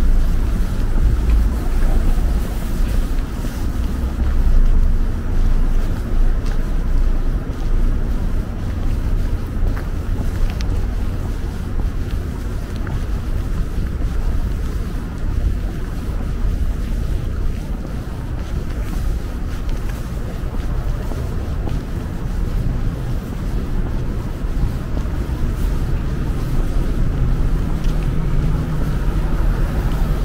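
Steady low rumble of city street traffic mixed with wind buffeting the microphone.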